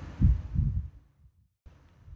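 Two low, dull thumps in quick succession, under half a second apart, with fainter low knocks near the end.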